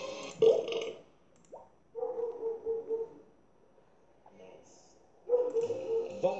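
Short pitched voice sounds from a cartoon playing on a TV, coming in bursts with quiet gaps: a brief loud sound in the first second, a held pulsing hum about two seconds in, then voices again near the end.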